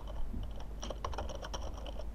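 Typing on a computer keyboard: an irregular run of short keystroke clicks.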